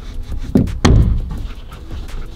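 Two sharp thumps about a third of a second apart as a carpet-lined plywood panel is punched by hand against the van's metal side, pushing its trim clips into their holes.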